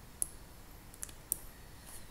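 Four sharp, irregularly spaced computer mouse button clicks.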